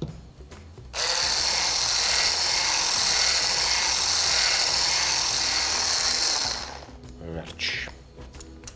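Electric hand blender with a whisk attachment whisking a milky liquid in a tall beaker. The motor starts suddenly about a second in, runs steadily for about five seconds, then dies away as it is switched off.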